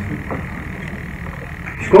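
A pause in a man's talk, filled by a low steady rumble of room noise. His speech resumes near the end.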